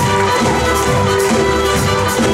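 A live band playing an instrumental passage: held keyboard notes over a bass line and a steady drum beat.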